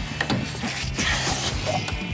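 Rubber balloon being stretched and worked onto a plastic pipe nozzle by hand: a run of small clicks and rubbing, with a brief hiss about a second in, over background music.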